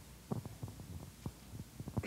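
Handling noise from a handheld microphone being passed from one person to another: a run of soft, irregular low thumps and knocks, with a slightly louder one near the end.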